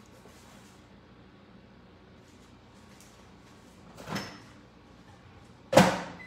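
A microwave oven door shutting with one sharp, loud clack near the end, after a softer noise about four seconds in; otherwise faint room tone.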